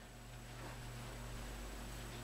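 Quiet room tone: a low, steady hum with faint hiss.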